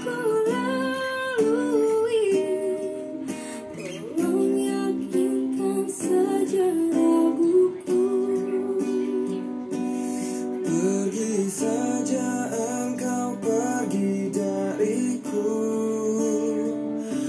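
Music: a woman singing with acoustic guitar accompaniment, her notes held and gliding over sustained guitar chords.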